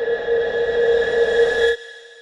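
A steady whistle-like drone of several held tones over a hiss, growing slightly louder and then cutting off suddenly near the end, leaving a brief near silence.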